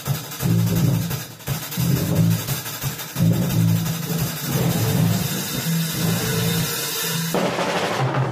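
Drum kit being played: a steady wash of cymbals with kick and snare hits, over low pitched notes that change in steps like a bass line.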